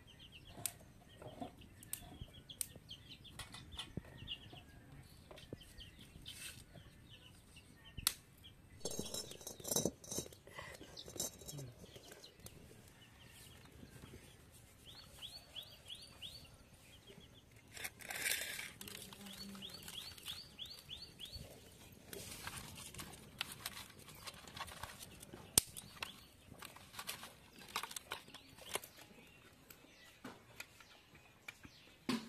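Outdoor village ambience: small birds chirping in quick repeated runs, with scattered knocks and clatters from work close by.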